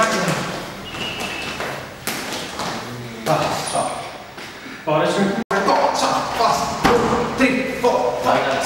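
A man's voice calling out at intervals, with thuds and taps of sneakers landing on a wooden floor during kicking and stepping exercises. The sound drops out for an instant about five and a half seconds in.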